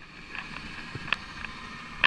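Muffled underwater ambience heard through a submerged camera's housing: a steady low hiss with a few faint clicks.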